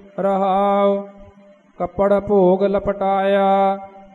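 A single voice chanting Gurbani, Sikh scripture, in a sung reciting tone held on a steady pitch. A short phrase is followed by a brief pause about a second in, then a longer drawn-out phrase.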